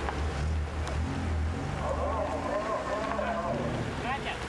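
Indistinct voices over a steady low rumble; the voices come in about halfway through.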